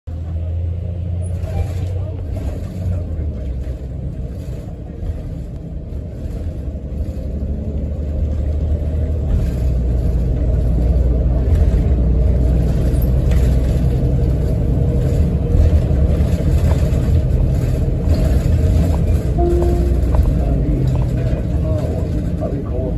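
Inside a moving city bus: a steady low rumble of engine and road noise with light cabin rattles, growing louder about eight seconds in.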